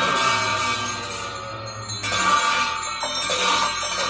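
Tibetan Buddhist ritual cymbals clashed twice, once at the start and again about two seconds in, each clash left ringing.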